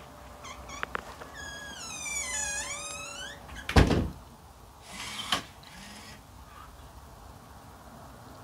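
Remote-controlled door swinging shut: a long squeal that falls in pitch as it swings, then a loud thud as it closes about four seconds in. About a second later comes a short whirring burst ending in a click.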